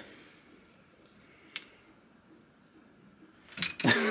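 Quiet hand handling of a silicone lure mould being peeled off a moulded chocolate lure, with one sharp click about a second and a half in and a few faint, short, high chirps.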